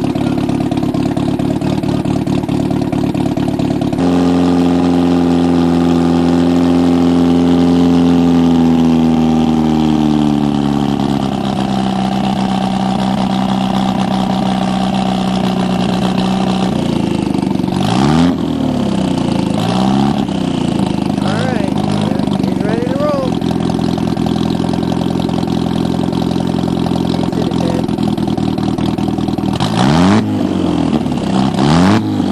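Merkur XR4Ti race car's four-cylinder engine running in staging: about four seconds in it picks up to a higher held speed, then sinks back over several seconds to a steady idle, and later it is given a series of short rev blips.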